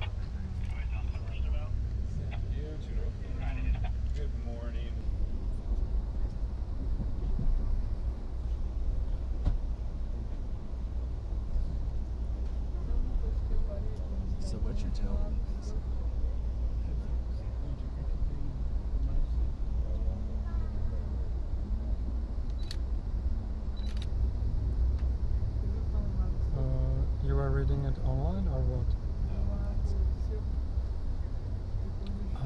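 Amtrak passenger train running, heard from inside the coach: a steady low rumble, with quiet voices talking now and then, clearest near the end.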